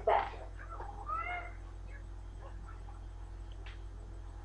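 Two short high-pitched vocal cries, one at the very start and one about a second in that rises then falls in pitch; faint light knocks follow.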